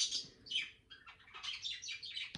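Caged pet bird chirping: a quick, irregular run of short, high chirps.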